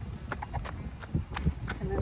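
Quick footsteps in flip-flops on asphalt: a fast run of sharp, uneven slaps at a brisk walking pace.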